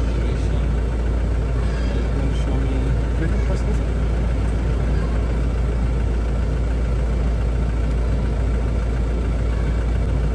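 Toyota Land Cruiser Prado engine idling steadily, with a constant low rumble.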